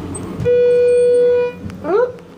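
A single steady electronic beep from the elevator car, held for about a second and then cut off sharply, followed near the end by a short rising vocal sound.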